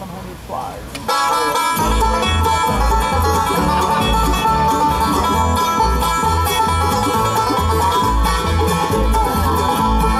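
Bluegrass band kicking off an instrumental intro about a second in: banjo, acoustic guitar, mandolin and resonator guitar over a steady upright bass beat.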